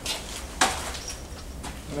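A single sharp knock a little over half a second in, over a steady low rumble.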